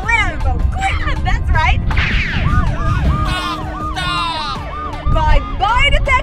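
Siren yelping rapidly, about three rises and falls a second, with wind buffeting the microphone throughout and short exclamations early on.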